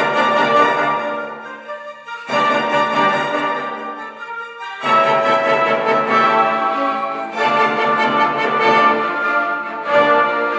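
Symphony orchestra playing classical music, sustained string and brass chords. The music changes abruptly about two seconds in and again about five seconds in, as if passages were cut together.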